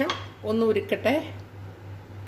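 A short clink of a glass tumbler against a stainless steel pan at the start, over a low steady hum.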